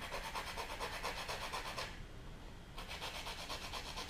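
Orange peel being zested on a microplane grater: a rapid run of rasping back-and-forth strokes, pausing briefly about halfway through, then starting again.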